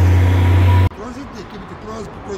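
Loud, steady low rumble of a road vehicle's engine close by, with traffic noise. It cuts off abruptly just under a second in, and quieter voices follow.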